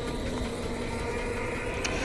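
Steady low background hiss with a faint hum and no distinct sound event.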